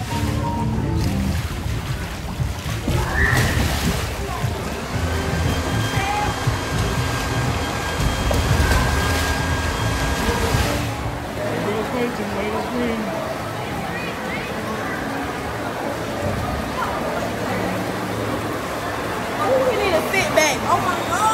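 Background music over water sloshing and splashing as an inflatable water-walking ball rolls on a pool.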